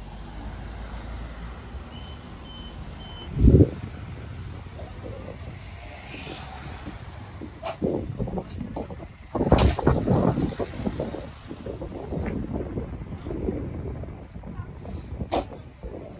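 Low street and vehicle rumble with a loud single thump about three and a half seconds in. From about halfway on come people's raised voices calling out and talking.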